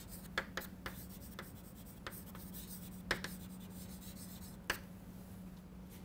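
Chalk writing on a blackboard: a run of short taps and scratches from the chalk strokes, thickest over the first three seconds with one more near the five-second mark. A faint steady hum lies underneath.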